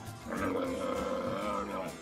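A dromedary camel bellowing in protest with its mouth wide open at being dressed and handled: one long call, starting a moment in and lasting well over a second.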